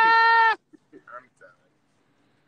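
A person's high-pitched squeal of laughter, held at one steady pitch for about half a second right at the start, then a little quiet laughing speech.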